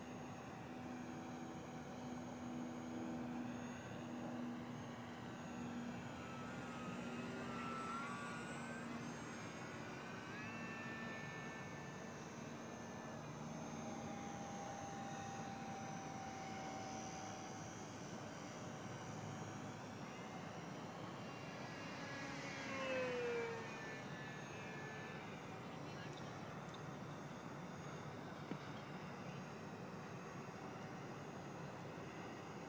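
Radio-controlled P-51 model airplane flying at a distance, its motor and propeller making a faint whine that wavers in pitch. The sound swells and slides down in pitch as the plane passes, about three-quarters of the way through.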